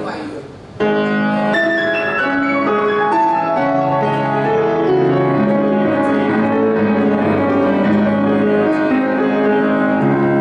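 Kawai grand piano being played: classical piano music that stops briefly just after the start, resumes about a second in and then runs on continuously.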